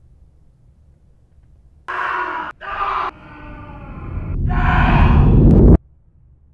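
A man's enraged screams: two short yells about two seconds in, then a longer scream over a deep rumble that swells louder and cuts off abruptly.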